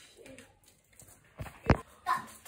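A dull thump, then a sharp knock about a third of a second later, much louder, against a quiet room.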